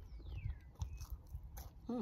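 Close-up chewing and biting of food, with wet mouth clicks and smacks at irregular intervals, and a short hummed "mm" near the end.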